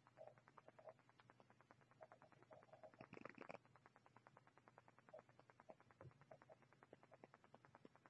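Near silence: faint room tone with a very faint, rapid, even ticking.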